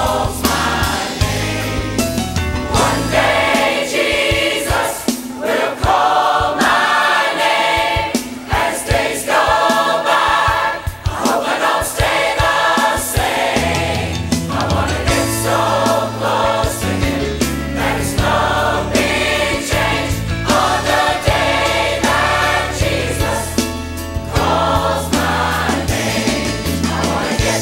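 Church choir singing together with instrumental accompaniment. A bass line under the voices drops away from about six seconds in and returns around fourteen seconds.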